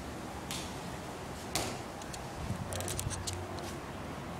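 A football kicked on a tiled floor: one sharp thud about a second and a half in, then a quick run of light knocks and rattles near the end.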